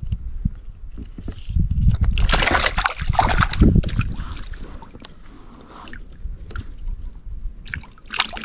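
A redfin perch thrashing at the water's surface beside a kayak, slapping and splashing in irregular bursts. The splashing is loudest about two to four seconds in and dies down, then comes again briefly near the end.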